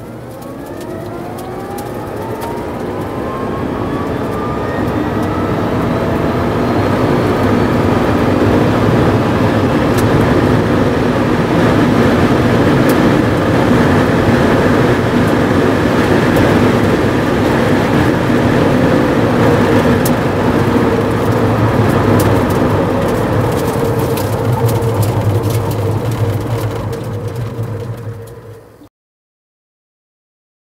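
Rimac Nevera R's electric motors under full-throttle acceleration, heard from inside the cabin: a whine that rises in pitch over the first few seconds, under a loud rush of road and wind noise that builds and then holds steady at very high speed. The sound cuts off suddenly near the end.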